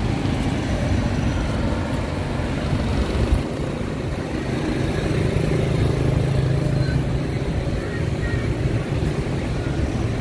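Mixed road traffic at a busy city street: cars, motorbikes and motorbike tuk-tuks driving past, a steady blend of engine noise with no single vehicle standing out.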